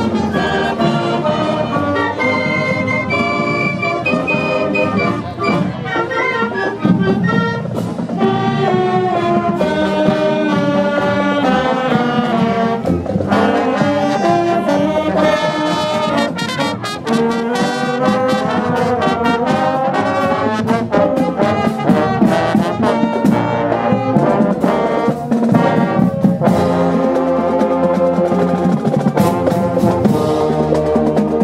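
High school marching band playing a tune on the march: brass and saxophones carrying the melody over sousaphones, with steady drum hits throughout.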